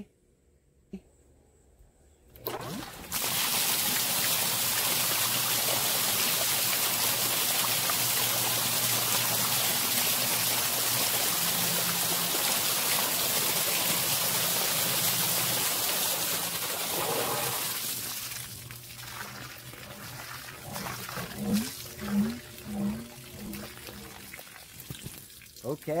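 Zoeller M98 submersible sump pump switched on a couple of seconds in, pumping water out of the basin through an inch-and-a-half discharge pipe. A steady rush of water runs for about fifteen seconds, then tapers to a weaker, uneven flow as the basin empties.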